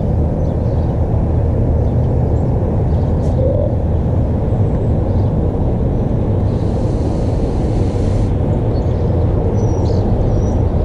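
Steady low outdoor rumble throughout. Partway through, a soft hiss lasts about two seconds as an e-cigarette is drawn on, before a large vapour cloud is exhaled.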